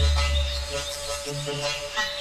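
Hardcore rave music in a DJ mix: a held synth note over deep bass, with the drums dropped out for a breakdown.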